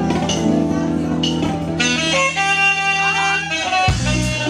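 Live band music, a saxophone playing over bass guitar, keyboards, drum kit and congas.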